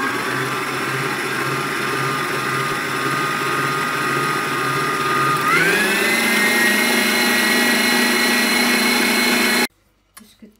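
Electric stand mixer's motor running steadily as its wire whisk beats a white mixture in the bowl. About halfway through the whine rises smoothly in pitch as the speed is turned up, then holds steady before stopping suddenly near the end.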